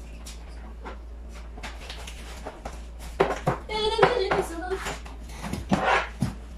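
Kitchen handling noises: short knocks and clicks of a jar, pot and cupboard. A high-pitched wordless voice rises loudest for a second or so a little past the middle.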